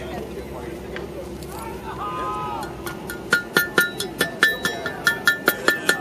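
Blacksmith's hand hammer striking iron on an anvil: a steady run of ringing blows, about four or five a second, starting about halfway through.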